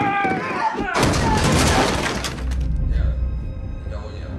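Film fight soundtrack: a strained vocal cry fades out, then about a second in comes a loud crash with glass shattering. A low rumble and music follow near the end.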